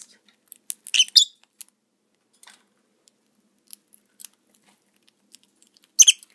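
Rosy-faced lovebirds pecking and cracking seed among sprouts in a plastic food bowl: scattered small clicks and crunches. A short high squeak comes about a second in, and another at the very end.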